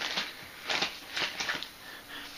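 Plastic lure packaging crinkling and rustling in a few short bursts as bags of soft-plastic baits are handled.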